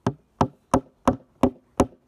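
Hammer driving a nail into wood: six steady blows, about three a second.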